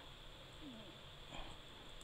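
Faint steady room hiss, with a couple of brief, very faint sounds about halfway through and near the end.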